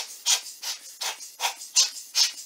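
Hand-squeezed rubber air blower puffing air into a DSLR's open body to blow dust off the image sensor: quick repeated hissing puffs, about three a second.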